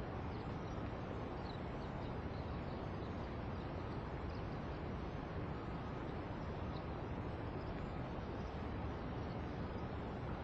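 Steady outdoor background hiss with faint, scattered calls of distant birds.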